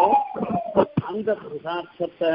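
A man's voice speaking in short broken phrases, part of a spoken religious discourse.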